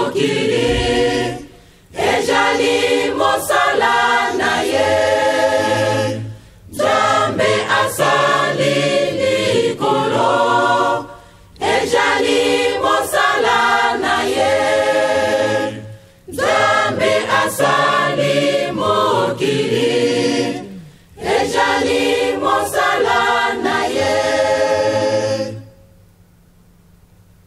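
Choir singing a Kimbanguist religious song in phrases of about four seconds, each followed by a brief pause. The singing stops near the end.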